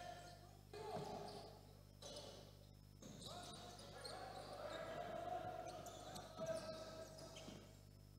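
Faint basketball bouncing on a hardwood-style sports-hall court as players dribble and move during play.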